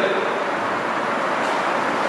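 A steady, even hiss with no speech and no distinct events.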